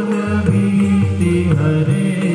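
Devotional aarti hymn chanted to music, the singing held on long sustained notes.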